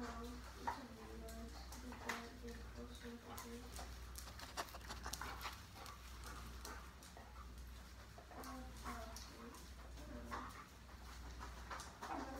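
A Labrador retriever searching a tiled floor: claws clicking on the tile as it moves and sniffs. Faint short pitched whines come in stretches over the first few seconds and again past the middle.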